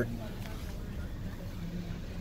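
Steady low rumble inside a parked car's cabin, with no speech.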